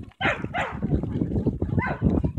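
A dog barking, with a loud call just after the start and another near the end, over low rumbling noise.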